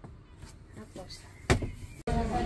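A single sudden thump about one and a half seconds in, fading over half a second, over faint low voices.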